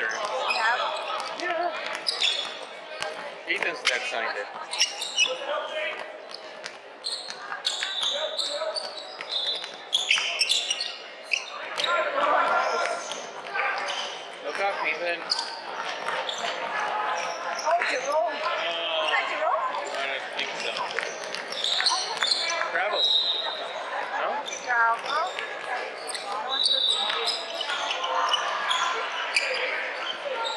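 A basketball dribbled on a hardwood court, with repeated bounces, under the voices of players and spectators calling out. All of it echoes in a large indoor sports hall.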